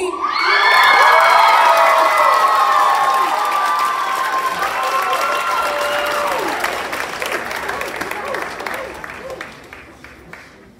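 Audience cheering and applauding, with many high-pitched shrieks and cheers over the clapping. It swells about a second in and dies away over the last few seconds.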